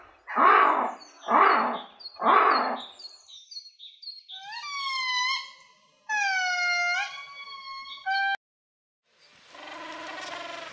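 Ring-tailed lemur calls: three rough, noisy calls about a second apart, then faint high chirps and three drawn-out pitched cries that waver and bend, the last one short and cut off abruptly.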